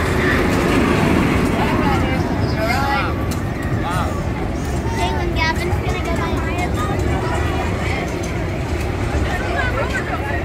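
Morgan hyper coaster train running along its steel track, a heavy rumble that is loudest around the first second or two, with people's voices over it.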